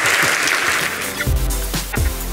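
Audience applause fading out, then electronic outro music with a deep bass and drum hits coming in about halfway through.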